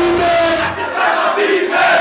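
Club crowd and a man on a microphone shouting and chanting together. The track's beat drops out about a second in, leaving the voices on their own, and comes back at the end.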